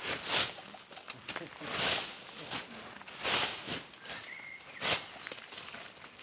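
Pruning hooks swung by hand into a leafy hedge: a swishing cut through leaves and twigs about every second and a half, with a brief high whistle-like tone just past the middle.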